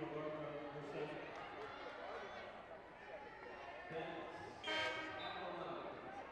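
Basketball game sound in an arena: a basketball bouncing on the hardwood court under voices from players and crowd, with a short high-pitched sound about five seconds in.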